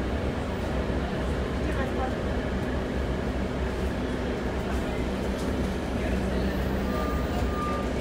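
Cabin of a 2012 New Flyer C40LF CNG city bus: the natural-gas engine runs with a steady low rumble under road and interior noise. A short steady beep sounds about seven seconds in.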